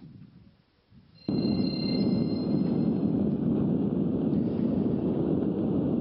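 After about a second of near quiet, the steady noise of a car driving along a road starts suddenly and runs on evenly, with a faint high whine over it for the first couple of seconds.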